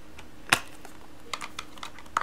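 Plastic Blu-ray case clicking as the disc is pressed onto the case's centre hub and the case is snapped shut: one sharp click about half a second in, then a few lighter clicks.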